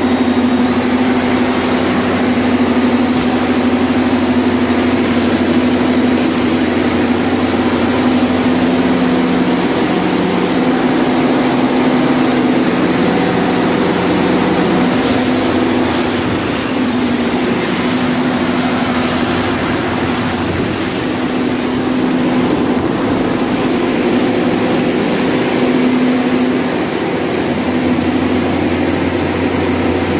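A loud, steady machine hum with a high whine above it; the whine rises and falls in pitch twice, about halfway through.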